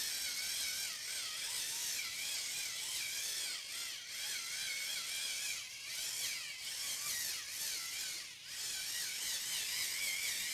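Battery-powered facial cleansing brush with a bristle head running at its single speed. Its small motor buzzes steadily, the pitch wavering as the spinning head is pressed and moved over the face; too much pressure limits the head's movement.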